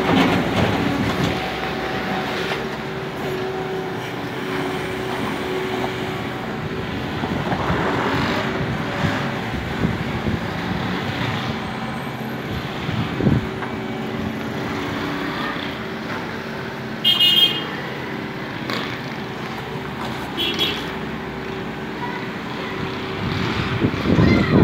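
Hyundai skid-steer loader's engine running steadily while it works, over street traffic noise, with a few knocks and two short horn toots about two-thirds of the way through.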